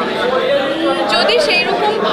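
Speech: a woman talking, with crowd chatter behind her.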